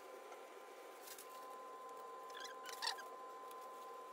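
Faint squeaks and rustling from a disposable surgical gown and gloves being handled, loudest a little before three seconds in, over a faint steady electrical hum.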